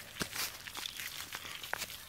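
Dry grass and dead leaves rustling and crackling as small plastic toys are pushed through them, with scattered light clicks.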